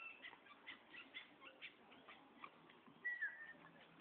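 Small birds chirping faintly, with quick short calls throughout and one brief whistled note that falls in pitch about three seconds in.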